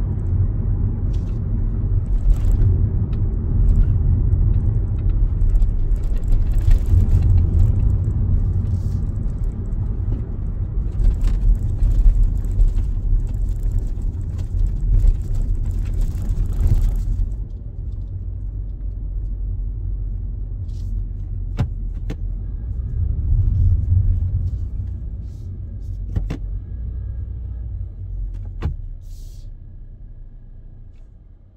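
Low road and engine rumble inside a Kia Seltos cabin while driving at about 50 km/h. The rumble drops off about halfway through and fades as the car slows almost to a stop. A few faint clicks come near the end.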